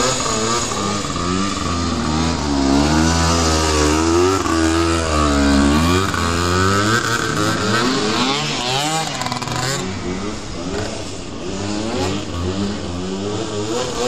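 Small two-stroke engine of a Suzuki PV minibike revving up and down repeatedly as it is ridden in tight circles.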